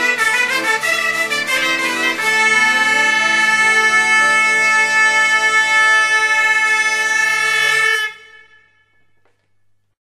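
Traditional Piedmontese and French folk band music coming to its end: a lively passage, then about two seconds in the whole band holds a long final chord, which is cut off near the end and rings away briefly.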